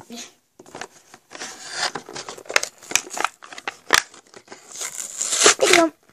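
Plastic blister packaging and its card backing being torn open by hand: crackling, crinkling and ripping with many sharp snaps.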